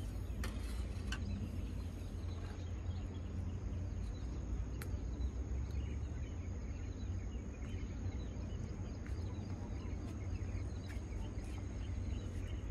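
Outdoor ambience: a steady low rumble with a thin, steady high whine above it and faint scattered chirps. A few light clicks come about half a second in, just past a second, and near five seconds, while a small caught fish is handled and unhooked.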